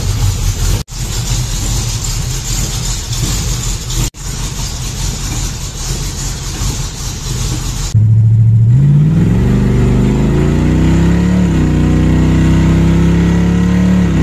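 A carbureted car engine running with the hood open, a rough, unsteady sound broken by two brief cuts. About eight seconds in it changes to the sound inside the car as it pulls away: the engine note climbs steadily, shifts about three seconds later, then settles into a steady cruise.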